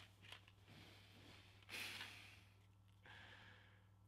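Near silence, broken about two seconds in by one faint exhaled breath, a sigh from a man, and a weaker breath a second later.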